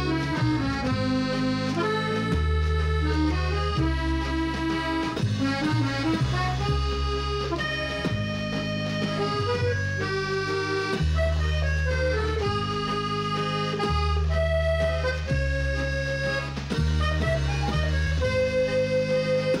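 Music for the credits, led by an accordion: a melody of held notes over bass notes that change every second or so.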